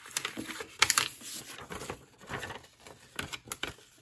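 A folded sheet of printer paper being unfolded and handled, rustling in irregular bursts with small clicks, loudest about a second in.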